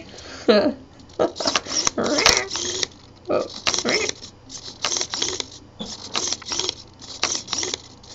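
Hobby servo whirring in short bursts as it drives a laser-cut wooden beak open and shut, with the beak pieces clicking and clacking, about twice a second.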